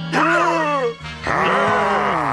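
Background music under a man's loud wavering cry that falls in pitch, followed about a second in by a second long cry.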